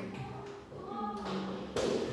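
A single sharp thump near the end, a hand coming down on a tabletop, after a faint held voice sound.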